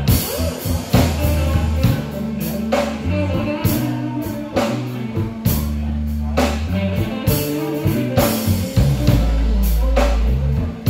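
A live blues band of electric guitar, electric bass and drum kit playing a slow song. The bass holds long notes under bending guitar lines, while the drums keep a slow beat with a cymbal or snare hit about once a second.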